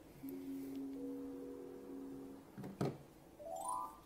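Merkur slot machine's electronic game sounds: a steady chord of tones while the reels spin, a short thump near three seconds in, then a quick rising run of beeps as a win comes up.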